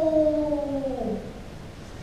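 The drawn-out tail of a man's shouted kiai during a paired bokken exercise: one long cry held on a single pitch and sliding slowly lower, which drops away about a second in.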